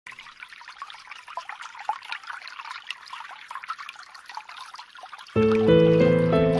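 Trickling water with many small drips for about five seconds, then music begins abruptly and much louder near the end.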